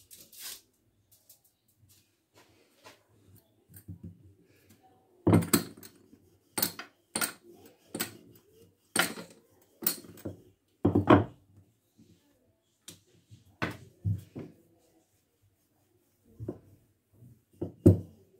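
Wooden rolling pin rolling out thin pastry dough on a marble worktop. There is a run of sharp knocks, about two a second, from about five seconds in until about fifteen, and one more knock near the end.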